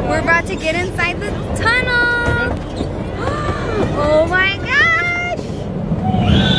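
High-pitched voices calling out in short and long drawn-out calls, over a steady low rumble.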